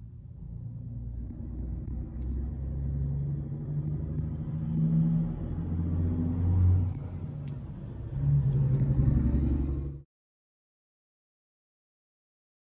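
Vehicle engine running and revving in surges, heard from inside the truck's cab: a low rumble that grows louder over the first few seconds and cuts off suddenly about ten seconds in.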